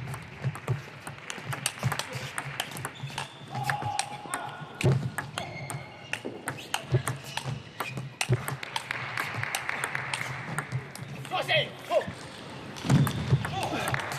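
Table tennis rallies: the ball clicking off the bats and the table in quick, irregular knocks, over the murmur of voices in a large hall.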